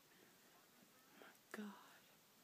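Near silence: quiet room tone, broken near the end by a soft breath and a brief, quiet murmur from a young woman.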